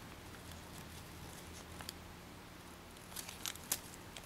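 Faint rustling and soft crinkles of origami paper being twisted and creased by hand, a few quick ones about two seconds in and a small cluster near the end, over a low steady hum.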